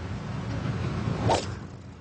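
A single short swoosh, rising quickly in pitch, just past the middle, over a low steady background rumble.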